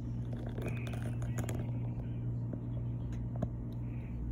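Scissor tip scraping and ticking against the plastic shrink-wrap of a boxed AirPods case as the seal is cut, in faint scattered scrapes over a steady low hum.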